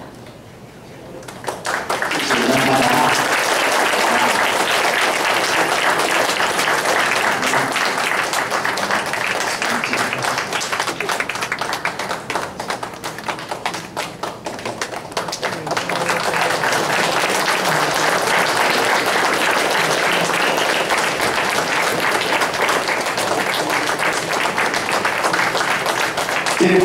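Congregation applauding, starting about a second and a half in and going on for over twenty seconds, with a brief dip about halfway through; a few voices are mixed in.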